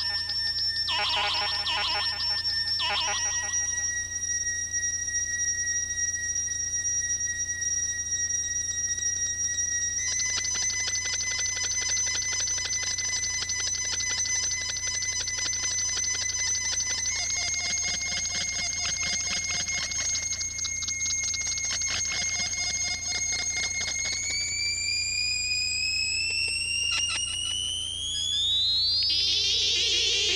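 Electroacoustic music of electronic tones: a steady high, whistle-like tone that steps up in pitch three times over a low steady hum, with a fast flutter joining in the middle, then slides upward in pitch over the last few seconds.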